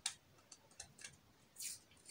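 Faint handling sounds of masking tape being wrapped around a wire joint: a few light ticks, then a brief rustle of tape about one and a half seconds in.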